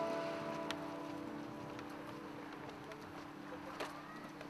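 A held chord of steady tones rings on quietly and slowly fades, with a few faint clicks.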